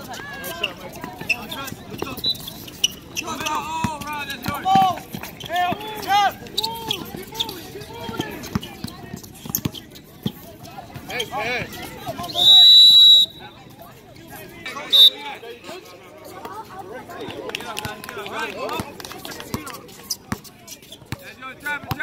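Basketball bouncing on an outdoor court with players' voices calling out, and a referee's whistle blown once for about a second about halfway through, then a short second blast a couple of seconds later.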